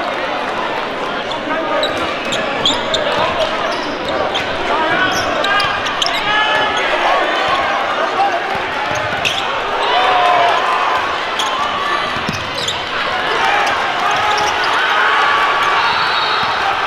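Basketball being dribbled on a hardwood gym court, its bounces sounding over the steady chatter and shouts of a crowd in the gym.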